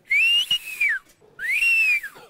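A man whistling twice. Each loud whistle rises and then falls in pitch. The second starts just over a second in and is still sounding at the end.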